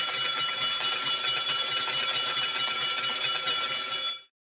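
Online slot machine's mega-win sound effect: a steady, dense jingle of ringing bells and clinking coins.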